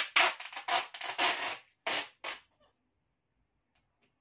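Adhesive tape being pulled off its roll in a run of quick, screechy strokes, then two short pulls about two seconds in.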